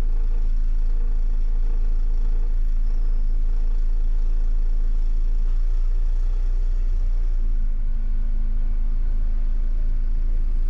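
MAN Lion's City city bus engine running as the bus creeps forward in traffic, heard from inside the driver's cab: a deep steady rumble with a humming tone that drops away briefly around the middle and then returns.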